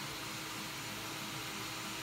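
Steady, even background hiss with a faint constant hum, unchanging throughout.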